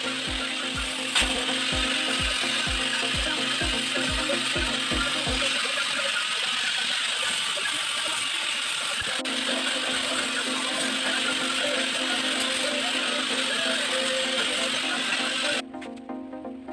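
Angle grinder grinding the welded joints of a steel stand: a loud, steady grinding that stops abruptly near the end.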